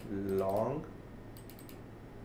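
A quick run of about four computer keyboard key clicks, about a second and a half in.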